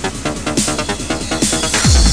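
Trance music from a DJ mix with a steady pulsing beat; near the end a rising hiss builds and a tone sweeps downward into a heavy bass hit.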